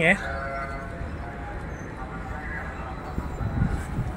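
Steady low rumble of quayside harbour background noise, with a brief louder low rumble about three and a half seconds in.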